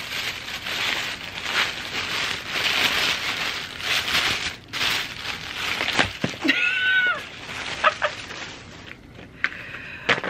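Tissue paper rustling and crackling as it is pulled out of a box and handled, with a short wordless voice sound about six and a half seconds in and another brief one near eight seconds.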